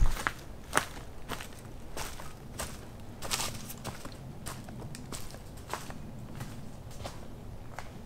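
Footsteps of a hiker walking on a dry, leaf-strewn dirt forest trail, each step a short crunch or crackle, coming at an even walking pace.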